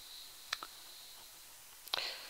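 Quiet room tone with a few faint, sharp clicks: a pair about half a second in and another just before the end.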